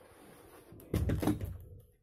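Hanging-rail sliding wardrobe door being moved along its top rail: a rumbling slide, then a loud clatter of knocks about a second in.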